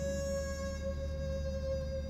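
Background score: a single long held note with a bright, bell-like ring over a low steady drone.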